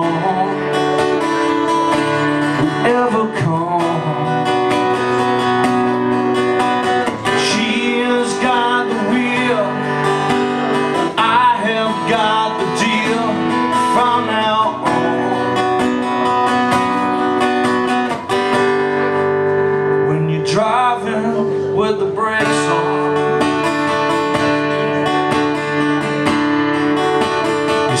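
Solo acoustic guitar playing chords with a man singing over it; the voice comes in phrases, with the guitar carrying on alone between the sung lines.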